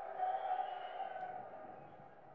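A sustained musical tone on a muffled, band-limited old live concert recording. It swells in the first half second and fades away toward the end, heard before the band starts the song.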